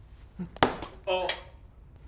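A single sharp knock of a hard object, about half a second in, followed by a man's short "Oh".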